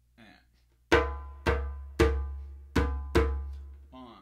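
Djembe with a synthetic head played with tone strokes at the edge of the head, fingers together. Five ringing hand strokes in the son clave rhythm begin about a second in.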